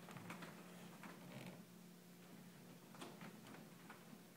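Near silence: a steady low hum of room tone with a few faint, scattered clicks.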